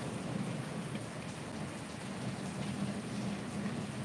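A steady, fairly quiet hiss of background noise with no distinct events.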